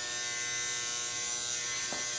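Corded electric hair clippers running with a steady buzz of unchanging pitch.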